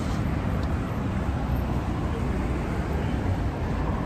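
Steady city street noise of passing traffic: an even low rumble with no distinct events.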